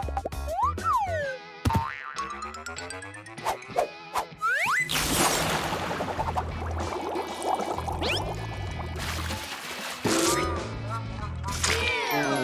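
Cartoon sound effects over upbeat background music: springy boings and whistle-like rising and falling glides, with a burst of rushing noise about five seconds in.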